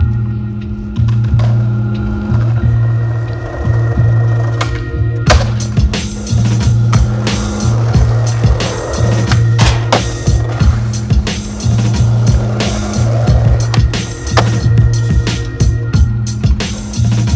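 Skateboard wheels rolling over pavement, with sharp clacks of the board popping and landing, mixed with music that has a steady heavy bass line. The board clacks come thick and sharp from about five seconds in.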